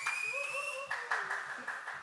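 Audience clapping briefly, with scattered cheering voices among the claps.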